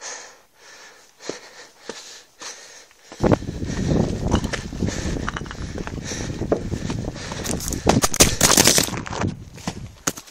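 A hiker's rhythmic heavy breathing. About three seconds in, loud rumbling noise on the microphone takes over, with scattered clicks and knocks, as of footsteps and camera handling on a rocky trail.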